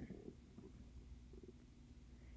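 Near silence: faint room tone with a low hum.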